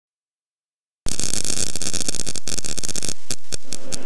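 After about a second of silence, loud static hiss starts suddenly, then breaks up into a run of crackles and pops in the last second.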